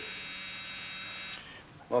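Electric doorbell buzzer sounding in one steady buzz that cuts off about a second and a half in.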